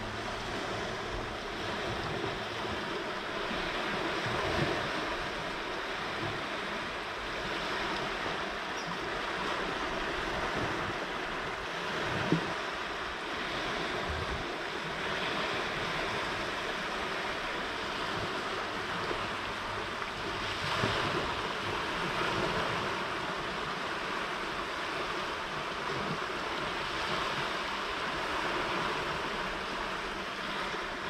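Fast-flowing canal water rushing steadily past the bank. There is a single brief knock about twelve seconds in.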